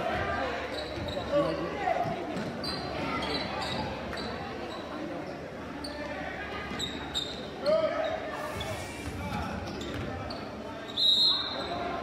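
Gymnasium crowd talking and shouting during a basketball game, with a basketball bouncing on the hardwood court and short sneaker squeaks. A referee's whistle sounds near the end, echoing in the hall.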